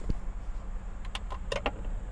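Handling of kitchen utensils, food containers and a wooden cutting board: a dull thump just after the start, then a quick run of four or five light clicks and clinks about a second in, over a steady low hum.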